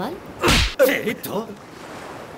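A short, sharp whoosh sound effect about half a second in, a quick swish lasting well under half a second, followed by a brief bit of voice.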